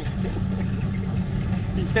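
Steady low rumble of a bus engine heard inside the passenger cabin, with faint voices over it.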